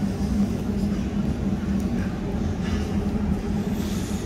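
A parked box truck's engine idling, a steady low hum that holds even throughout.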